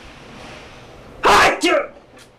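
A man sneezing: a soft drawn-in breath, then one loud, sudden sneeze about a second and a quarter in, with a short voiced tail right after it.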